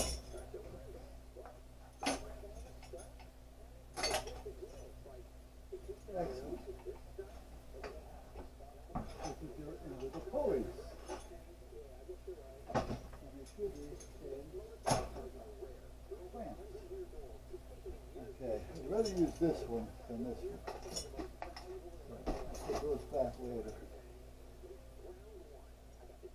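Small metal hardware clinking and rattling as parts are picked through by hand, with a sharp clink every few seconds.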